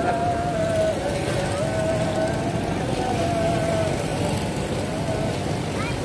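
Busy open-air market ambience: a steady, dense background noise, with a voice holding long, wavering notes over it several times, each up to about a second long.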